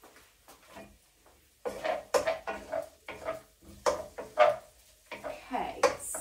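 A utensil scraping and knocking against a frying pan and a wooden chopping board as chopped chillies are pushed into the pan and stirred through onion and garlic. It starts about a second and a half in as a string of clacks and scrapes, with the sharpest knocks around two and four seconds in.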